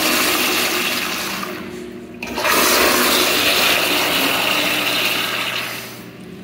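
American Standard Madera toilet flushing: a loud rush of water that eases off about two seconds in, stops briefly, then surges again and runs until it fades near the end. The uploader rates this toilet's rinse as poor.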